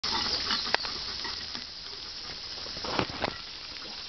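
Beef skirt steak (harami) sizzling on a grill: a steady crackling hiss with a few sharp clicks, once early and twice about three seconds in. The heat may have dropped.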